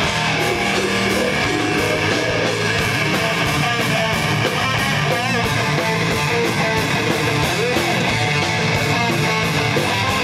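A live heavy metal band playing loudly and without a break, with electric guitars and drums.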